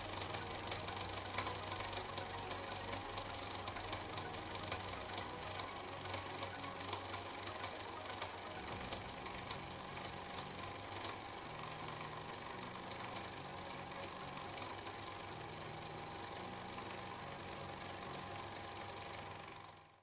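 Thermoacoustic Stirling engine running with its 3D-printed bidirectional impulse turbine spinning: a faint mechanical rattle of irregular light clicks over a low steady hum. It fades out near the end.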